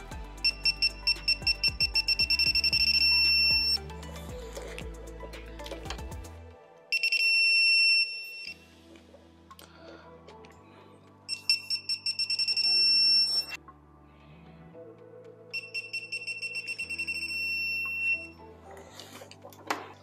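Digital torque wrench beeping, four times, as caliper mounting bolts are torqued to 25 ft-lb: each time fast high beeps that run together into a held tone when the set torque is reached. Background music plays underneath.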